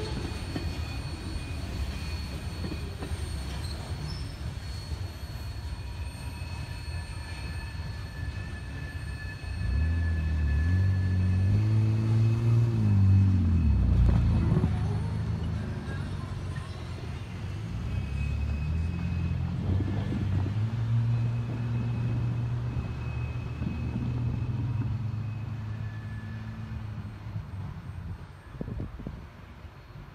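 Freight train of covered hopper cars rumbling away along the rails, with thin wheel squeal on top. About a third of the way in, a louder low engine drone joins, wavering in pitch and peaking soon after. It settles into a steadier drone for much of the rest and fades near the end.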